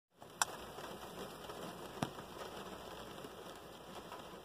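Rain pattering on a car's roof and windows, heard from inside the cabin as a soft steady hiss, with two sharp clicks, one near the start and one about two seconds in.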